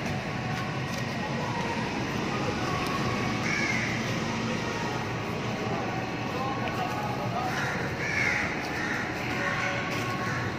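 A few short, harsh bird calls over a steady background din: one a few seconds in and three more near the end.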